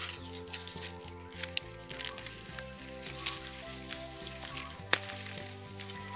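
Background music with a steady tune, over faint scattered clicks and crinkles of an air-layer's wrapping being handled on a cinnamon branch. A sharper click comes about five seconds in.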